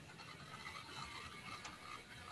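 Faint background hiss with a few soft computer keyboard keystrokes as text is typed.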